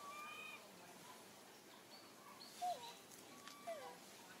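A young long-tailed macaque giving a few short, thin calls: one brief level call at the start, then two calls that drop in pitch, the first about two and a half seconds in and the second near the end.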